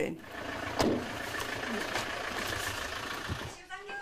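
A vehicle engine running steadily, an ambulance pulling up, with a thin steady whine over it. There is a single knock about a second in, and the engine sound fades just before the end.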